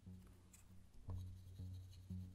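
Soft, quiet background music with low notes changing about every half second, over the faint rubbing of a watercolour brush on paper.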